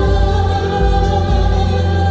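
A woman singing a sweet love song live into a handheld microphone over a backing track, amplified through the hall's sound system.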